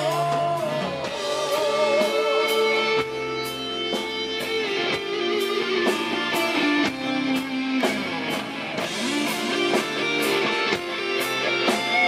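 Live rock band playing an instrumental passage: an electric guitar plays a lead line of held notes with vibrato and slides, over drums and bass.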